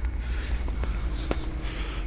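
Handling noise from a handheld camera being moved about: a steady low rumble with a few faint light clicks.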